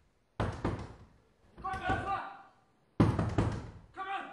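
Fists pounding hard on a door in two bursts of quick blows, the first just under half a second in and the second near the end, with a muffled shout from the other side between them.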